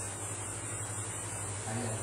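Steady high-pitched chirring of crickets, with a low steady hum underneath.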